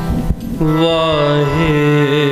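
Shabad kirtan: a few tabla strokes, then about half a second in the harmoniums sound a steady held chord and a singer comes in on a long, wavering note.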